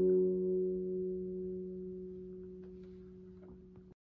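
The final strummed chord of an acoustic guitar ringing out, fading steadily over about four seconds as the song ends, and cut off just before the end.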